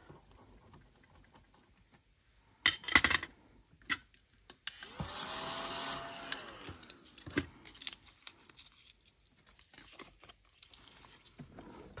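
A loud clatter of handling about three seconds in, then a small desktop vacuum runs for about two seconds, its motor whine rising as it spins up and falling away as it stops, followed by light handling noises.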